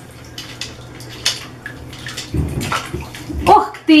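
Bath water sloshing in a tub around a baby, with light clicks of plastic bath toys being handled. A louder swish of water comes about two-thirds of the way through.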